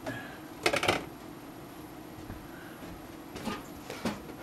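Kitchenware being handled and moved about: a brief clatter of a few sharp knocks about half a second in, and a couple of softer knocks near the end, over a low steady room hum.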